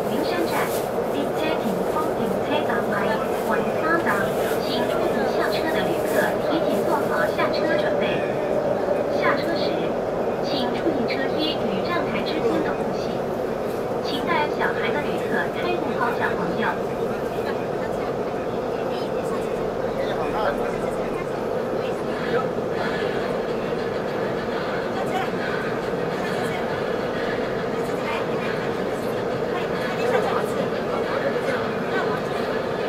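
Running noise of a CRH6A electric multiple unit heard from inside the passenger car: a steady hum with rumble underneath that holds throughout. Voices are heard over it.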